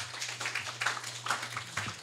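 Audience clapping: a dense run of hand claps from a small crowd, welcoming a speaker just introduced. A steady low hum runs underneath and stops near the end.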